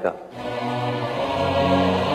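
Slow devotional music begins about a third of a second in: voices chanting together over long, held notes that change pitch in steps.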